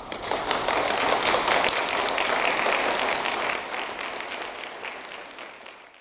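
Audience applauding, rising quickly at the start, then fading over the last couple of seconds before stopping abruptly at the very end.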